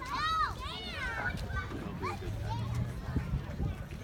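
Children's voices: a child shouts two high, arching calls in the first second, followed by scattered, fainter chatter.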